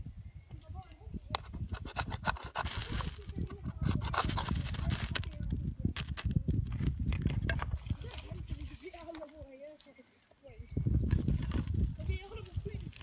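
Dry split wood and birch bark being handled and scraped while a small campfire is lit, with many small knocks and rustles. A quiet voice murmurs briefly about two-thirds of the way in.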